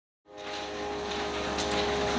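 Silence, then about a quarter second in the live sound from the sanctuary microphone cuts in: a steady electrical hum with several held tones over faint room noise.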